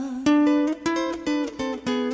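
Music: an instrumental fill of about five plucked guitar notes, picked one after another and left ringing, between sung lines of a Spanish-language ballad.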